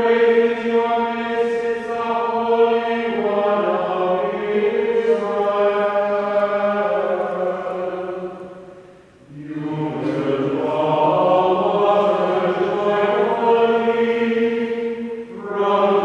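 Liturgical chant sung in long, slow, held notes of a single melodic line, with a short break for breath about nine seconds in. It is the sung responsorial psalm between the readings of the Mass.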